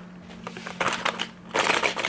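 Boxed Rapala lure's packaging, a cardboard box with a clear plastic window, handled and turned in the hand. Two short bursts of crinkling and clicking come, about a second in and again near the end, over a low steady hum.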